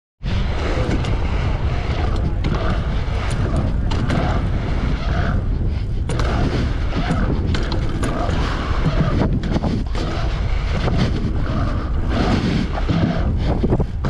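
Wind buffeting a helmet or chest-mounted action camera's microphone as a mountain bike rolls fast over a pump track, with a steady low rumble from the tyres on the hard surface and scattered clicks and rattles from the bike.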